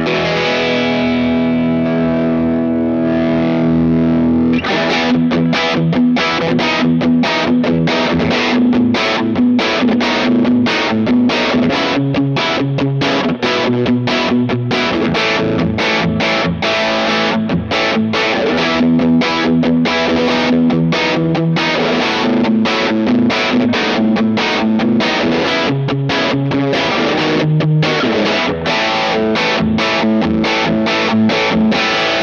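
Squier Classic Vibe '60s Telecaster electric guitar played through a Paul's Drive overdrive pedal, a very transparent low-gain overdrive. A chord is left ringing for the first few seconds, then steady strummed and picked chord playing follows with light drive.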